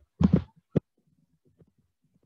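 Sharp clicks of a computer mouse and keyboard close to the microphone: a quick pair, then a single click about half a second later.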